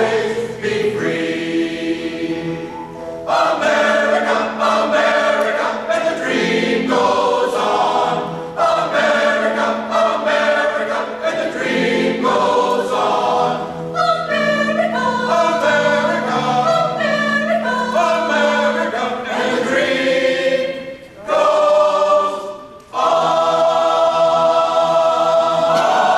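Mixed choir of men's and women's voices singing together in harmony, with a short break near the end before the next phrase begins.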